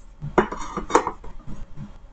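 Hard clicks and knocks of an airbag control module's circuit board being handled and set down on a desk, the two sharpest about half a second and a second in.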